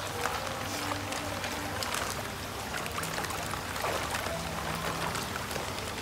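Water splashing and sloshing in a shallow plastic tub as a large koi is let out of a plastic bag, with the thin plastic bag rustling and crinkling.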